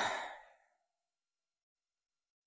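A man's short, breathy scoffing laugh: a single huff of breath that fades out about half a second in.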